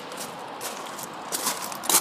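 A few footsteps on loose gravel, irregular, with the loudest step near the end.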